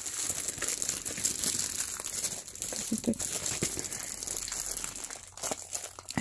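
Clear plastic packaging crinkling as hands handle a stamp packet and pull at a magazine's cellophane wrap: a steady run of small crackles.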